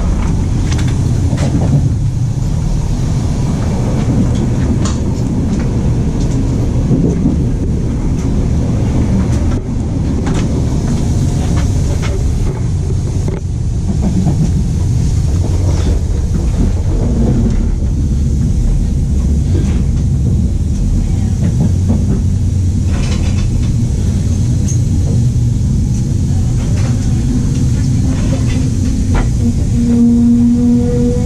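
Steady low rumble of an ETR 460 tilting train heard from inside the coach: wheels on rail and running gear as the train runs into a station platform, with a few brief knocks along the way.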